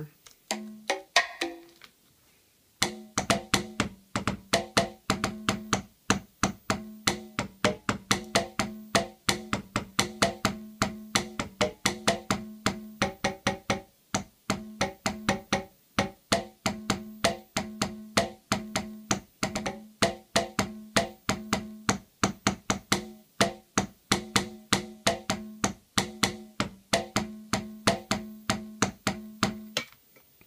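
Conga drum samples from a Teenage Engineering OP-1 drum kit, played as a fast run of short pitched hits, about five or six a second, triggered by a drumstick tapping a TS-2 Tap piezo sensor. The run begins about three seconds in, after a few short clicks.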